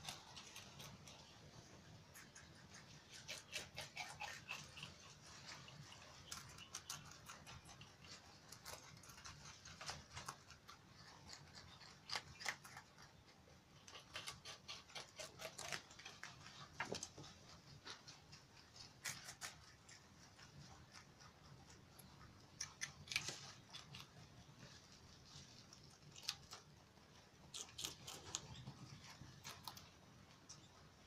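Rabbits chewing fresh leafy green stems: quiet, crisp crunching and snipping in irregular clusters, with light rustling of the leaves.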